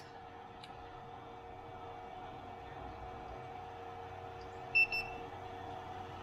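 A single short electronic beep about five seconds in, over a steady hum with several constant tones from the running bench equipment.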